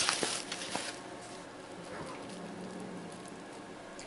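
A mylar food-storage bag crinkling and crackling as it is handled for about the first second, then quiet room tone.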